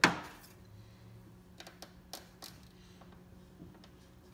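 A sharp knock right at the start with a short ringing tail, then a few faint clicks and taps over a low steady hum.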